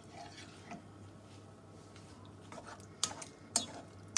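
Wooden spoon stirring button mushrooms through a thick tomato sauce in a sauté pan: quiet wet stirring, with two sharp knocks of the spoon against the pan about three seconds in.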